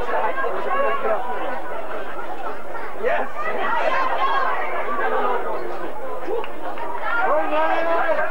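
Overlapping chatter of rugby spectators and players, several voices talking and calling out at once at a steady level.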